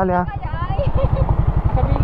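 Suzuki Raider 150 Fi's single-cylinder engine running steadily at low revs, a fast, even low pulsing. A voice trails off just as it begins.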